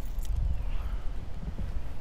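Footsteps on asphalt pavement as a person walks with a handheld phone, over a low rumble.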